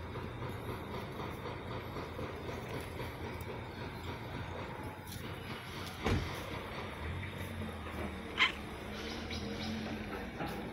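Steady low rumble, with a single thump about six seconds in and a short high squeak a couple of seconds later.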